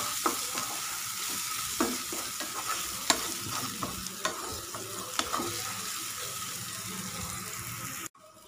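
Grated carrot and onion sizzling in oil in a non-stick pan as a spatula stirs it, with sharp clicks every second or so where the spatula knocks and scrapes the pan.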